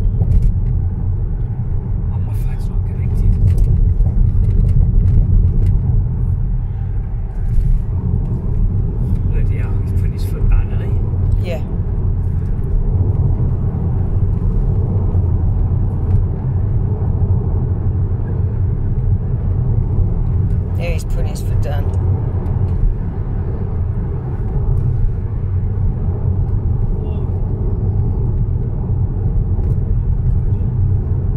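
Steady low rumble of a car driving at road speed, engine and tyre noise heard inside the cabin, with a few brief higher sounds about ten seconds in and again past the twenty-second mark.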